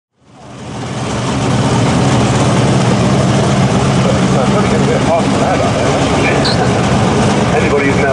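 Outlaw Anglia drag car's V8 engine idling steadily, fading in over the first second or so.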